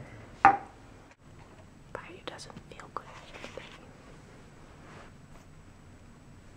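A short spoken syllable, then soft whispering close to the microphone.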